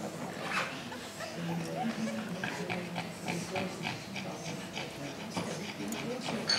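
Sounds from Pekingese dogs, with quiet murmured voices and scattered small knocks and rustles.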